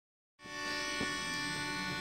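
Male klapa group singing a cappella, holding one steady chord in close harmony; it cuts in sharply about half a second in.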